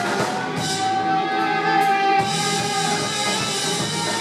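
Live rock band playing an instrumental passage: drum kit, electric guitars, bass and saxophone, with one note held for about a second and a half near the middle.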